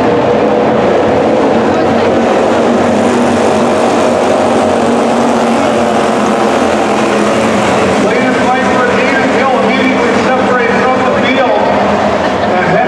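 A pack of slingshot race cars racing on a dirt oval: several small engines running hard together in a steady, loud drone. In the last few seconds their pitches rise and fall as cars pass.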